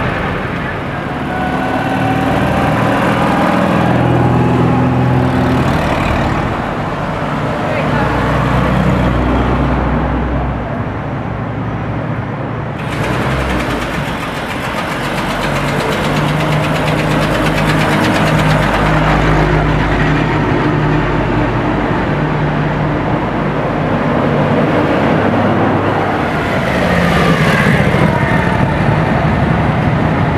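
Engines of vintage military vehicles running as they pass in a slow procession, with people talking over them.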